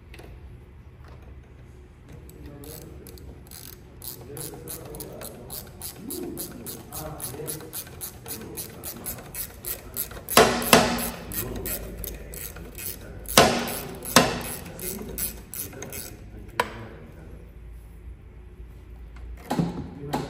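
Rapid, even ratchet-like metallic clicking from hand-tool work at the rear wheel hub of a SYM Jet 14 50cc scooter, with a few louder metal clacks a little past halfway.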